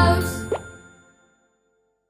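The last notes of a cheerful children's song ring out and fade within about a second. About half a second in comes a single quick, upward-sliding cartoon 'plop', a soap-bubble pop sound effect.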